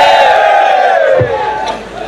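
A large audience calling out together in unison, one long drawn-out call that dies away about a second and a half in.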